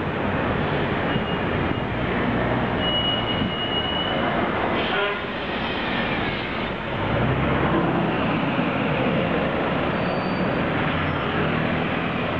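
Dense, steady roar of busy city-street traffic, with a thin high squeal from about two and a half to four seconds in and a shorter one near ten seconds.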